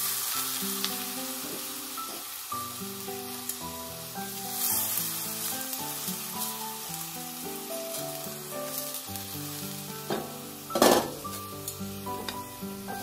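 Uncooked rice grains poured into a frying pan, a hissing patter of grains landing at the start and again about four and a half seconds in. A short sharp clatter comes near the end, and background music with slow melodic notes plays throughout.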